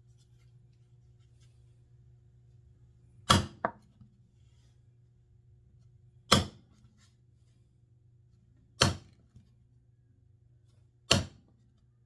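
Small hammer tapping the handle of a scratch awl to punch centre marks into a wooden blank for a Forstner bit: four sharp taps about two and a half seconds apart, the first followed at once by a lighter second tap. A faint steady low hum sits underneath.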